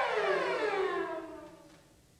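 Bowed cello note sliding down in one long, smooth glissando, fading away about a second and a half in.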